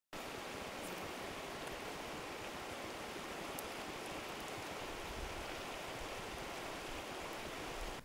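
Steady rushing hiss of shallow river water running over rocks in a riffle.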